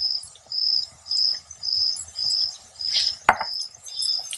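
A cricket chirping steadily, about two short high chirps a second. About three seconds in comes a single sharp clink of a metal spoon against the jar or bowl.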